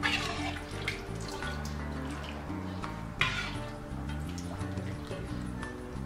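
Broth ladled onto a platter of stewed lamb and potatoes: two splashing pours, one at the start and one about three seconds in, over background music.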